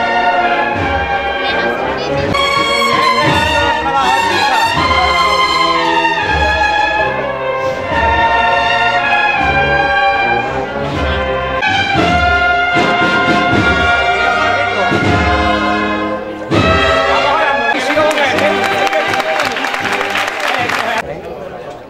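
Brass band of a Holy Week procession playing a slow processional march, trumpets and trombones carrying the melody over a low drum beat about once a second.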